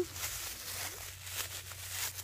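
Faint rustling of a thin plastic bag being handled and knotted shut around a folded diaper.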